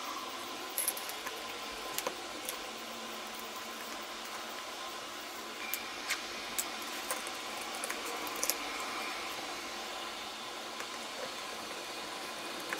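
Scattered light clicks and taps of small plastic and thin wooden kit parts being handled and set down on a cutting mat, over a steady hiss.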